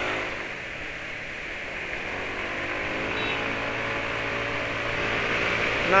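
Yamaha automatic scooter under way and accelerating, its engine note rising slowly, over a steady rush of wind and road noise.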